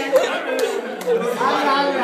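Indistinct talking: several voices speaking over one another, the words not clear.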